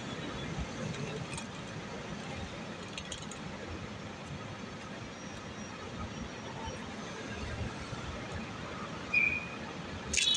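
Steady city street traffic noise, with light rustling as a riding jacket sleeve and gloves are adjusted. A short high chirp about nine seconds in.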